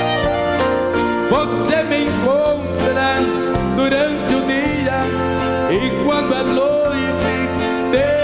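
Live sertanejo band music with a steady beat and a lead melody that slides between notes.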